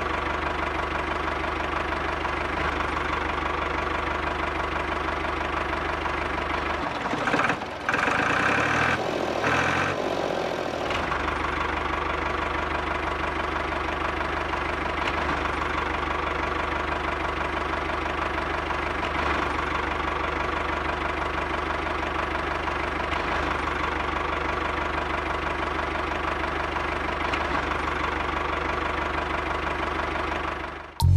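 Single-cylinder diesel engine running steadily at idle with an even knocking beat, briefly interrupted by a few seconds of different clatter about seven seconds in.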